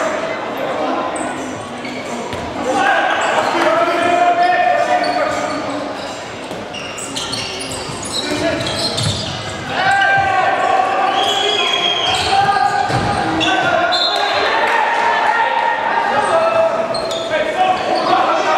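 A handball bouncing on a wooden sports-hall floor amid players' and coaches' shouts, all echoing in a large hall.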